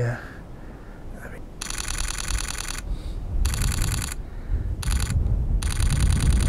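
Nikon Z9 firing four bursts of rapid shutter clicks, its synthesized shutter sound, the bursts about a second long with short gaps between.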